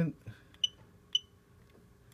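DJI Matrice 210 RTK ground system beeping as it is switched on from its TB50 battery: two short, high-pitched beeps about half a second apart.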